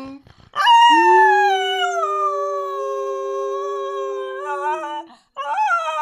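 Cocker spaniel howling: one long howl of about four seconds that swoops up at the start and then holds a steady note, with a second howl starting near the end.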